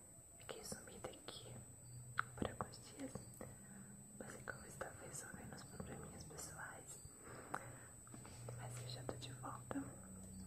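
A woman whispering close to the microphone, with many short, sharp mouth clicks and lip sounds between the whispered words.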